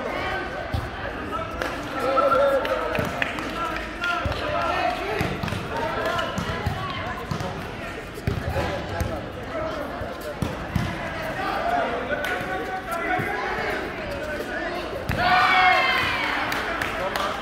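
Players' voices calling and chatting, with scattered dull thuds of a volleyball being hit and bouncing on the court floor in a large hall. A louder shout comes near the end.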